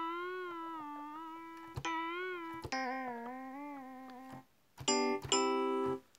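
Electric piano notes from the Presence XT software instrument, played from a MIDI keyboard. The held notes bend down and back up in pitch several times as the pitch bend wheel is moved, showing the pitch bend now working. Two more notes come in near the end.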